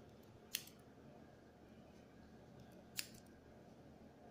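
Hairdressing shears snipping hair twice, two crisp clicks about two and a half seconds apart, over faint room hum.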